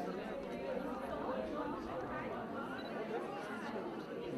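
Indistinct chatter of many people talking at once, a steady murmur of overlapping voices with no single clear speaker.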